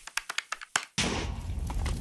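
Calculator buttons tapped quickly, about ten sharp clicks, then about a second in a sudden steady rush of fire sound takes over.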